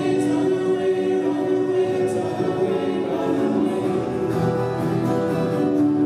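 Several voices singing a song together to acoustic guitar accompaniment, with long held notes.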